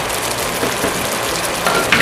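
Chicken pieces and ghee bubbling and sizzling steadily in a pot, with a fine crackle.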